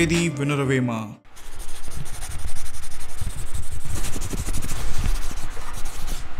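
A rough, scratchy rubbing noise that starts about a second in, runs for about five seconds, then cuts off.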